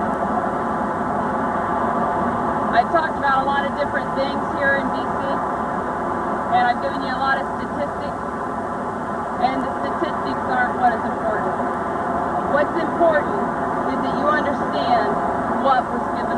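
Indistinct voices over a steady, dense background hum, with no clear words.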